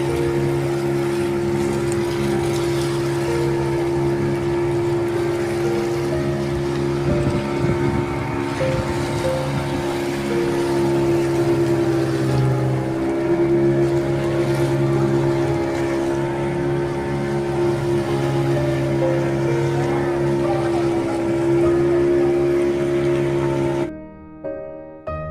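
Motorboat engine running steadily at speed, its drone holding one pitch, with rushing water and wind noise over it.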